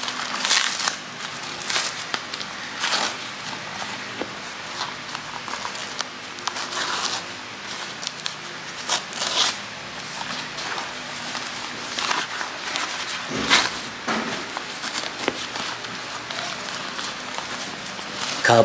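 Newspaper wrapping being unrolled and pulled off a plant by hand: irregular crinkling and rustling of paper.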